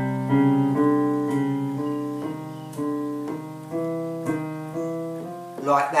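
Electronic keyboard in a piano sound, played with the left hand in a finger-independence exercise. The outer notes of a triad, root and fifth, are held while the middle fingers strike the inner notes, a new note about every half second. Each note fades before the next.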